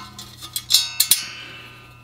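Small metal parts clinking on a cast-iron engine block as the roller-lifter retainer bar is fitted: two sharp clinks about three-quarters of a second and a second in, each leaving a ringing metallic tone that fades, over a low steady hum.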